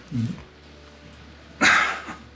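A man's short wordless voiced sound, then a sharp breath about a second and a half in.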